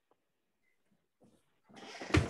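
Near silence, then near the end a short, harsh noise starts and rises quickly.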